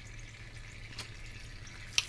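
Small tabletop rock fountain trickling steadily, over a low hum. There is one soft click about a second in, and a short sharp card sound at the end as a tarot card is picked up.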